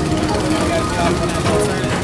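Small gasoline engines of Tomorrowland Speedway cars running below the PeopleMover track, with voices and ride music mixed in.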